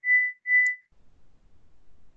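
Electronic beeping at one steady high pitch, about two short beeps a second. The beeping stops about a second in, leaving faint background noise.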